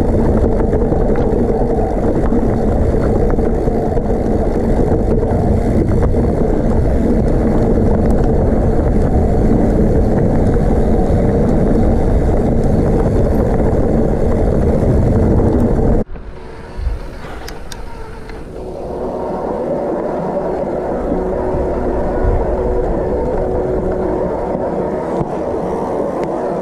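Wind rushing over an action camera's microphone with the rattle and rumble of a mountain bike riding down a rough, stony trail. About 16 seconds in the sound cuts to a quieter stretch of rolling noise with a faint steady hum.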